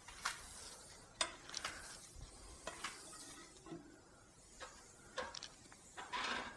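Faint hiss and sputter of air and liquid Xtire sealant escaping a fresh puncture in an e-bike tyre, with scattered light clicks and taps as the wheel is turned by hand. The hole has not yet sealed.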